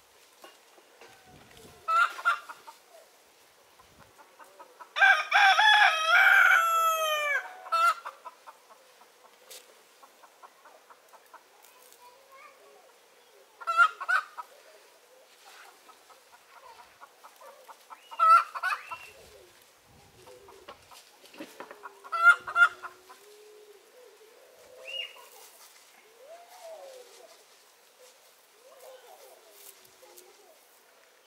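A rooster crows once, a long call about five seconds in, and short chicken calls come at intervals, four of them spread through the rest.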